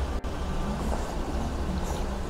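Steady low background rumble, dipping out very briefly about a fifth of a second in.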